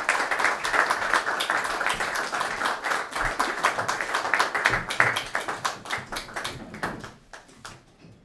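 Audience applauding with dense, irregular clapping that thins out and fades away over the last couple of seconds.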